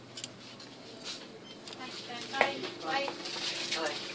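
Indistinct background voices in a shop, starting about halfway through, over a low steady hum, with a few light clicks early on.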